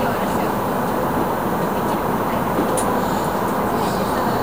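Steady running noise of a commuter train heard from inside the carriage: the even rumble of the car and its wheels on the rails.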